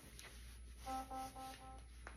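Faint rustling of clothing fabric as the waistband of the pants is handled, with a short run of four quick pulses of a steady low tone about a second in.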